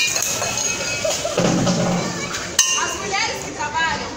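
People's voices calling out in short, high-pitched phrases over general street noise, with a sharp click at the start and another about two and a half seconds in.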